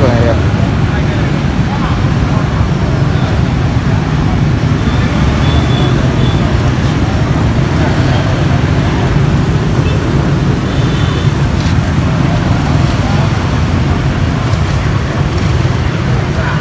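Steady low rumble of street traffic, with people talking faintly in the background.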